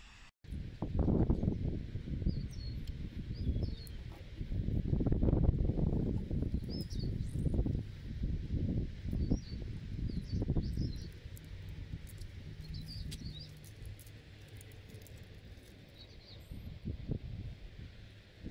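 Wind buffeting the microphone in uneven gusts, with birds chirping faintly in the background.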